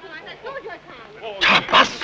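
Faint background chatter of voices, then near the end two loud, rough vocal outbursts from a man, a gruff shout or laugh.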